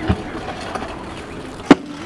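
Stunt scooter wheels rolling on a concrete skatepark surface, with a single sharp, loud clack of the scooter hitting the concrete near the end as it lands a backflip.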